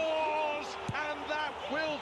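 Football commentary voice calling a goal, with one short thump about a second in.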